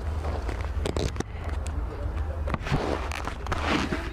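Low, steady rumble of a motorcycle engine idling, with a few sharp clicks and a louder burst of rustling noise near the end.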